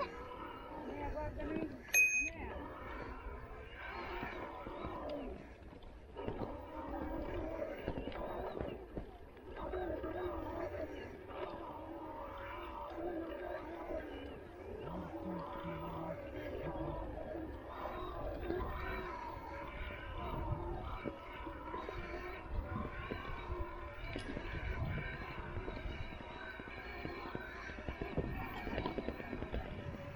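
Indistinct chatter of people walking, with a single short ring of a handlebar bicycle bell about two seconds in.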